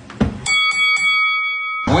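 A short thump, then a metal bell struck three times in quick succession, ringing on and cut off suddenly: a boxing ring bell sound effect.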